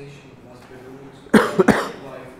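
A man coughing twice in quick succession, about one and a half seconds in, loud over faint background speech.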